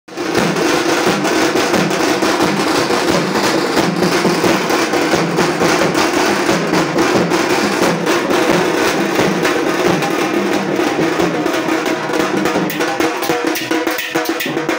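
Satti molam drumming: a steel-shelled satti drum struck with sticks, with a barrel drum joining in, in a fast, unbroken rhythm of dense strokes.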